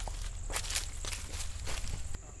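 Footsteps on grass, a handful of irregular steps, over a steady thin high-pitched tone in the background.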